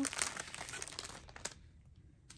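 Small plastic baggies of diamond painting drills crinkling as they are picked up and handled, the crackle dying away after about a second and a half.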